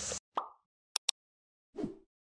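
Subscribe-button animation sound effects: a short pop, then a quick double mouse click about a second in, then a falling swoosh near the end, each set against dead silence.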